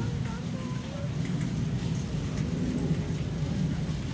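Steady low rumble of a large warehouse store's ambience, with faint distant voices in the first second or so.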